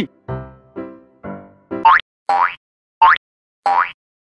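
Cartoon-style music with sound effects: three short pitched notes, then four quick rising 'boing' sweeps about two thirds of a second apart.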